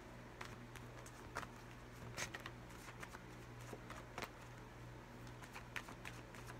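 A deck of tarot cards being shuffled by hand: faint, scattered flicks and snaps of card edges. A steady low hum runs underneath.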